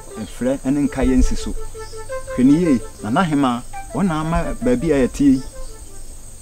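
A man talking in film dialogue over quiet background music, with a steady high-pitched tone underneath.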